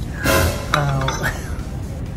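A ceramic plate clinks against a café table with a short clatter about a quarter second in, followed by a few lighter clicks, over a voice and background music.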